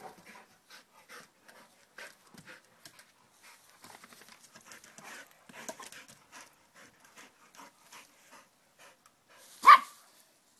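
Dogs panting hard during rough play, quick rhythmic breaths at about two to three a second. Near the end one dog gives a single loud, sharp bark.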